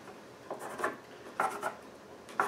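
Pencil scratching on a pine board as it traces around the edge of a wooden rocker, in two short strokes about half a second and a second and a half in.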